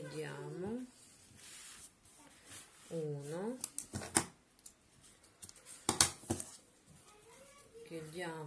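Handling of a crocheted amigurumi piece: a short rustle of yarn being drawn through, then several sharp clicks, the loudest about six seconds in. A woman makes two brief wordless vocal sounds, at the start and about three seconds in.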